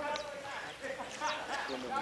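Faint background voices in a pause between close-up speech, with no loud event.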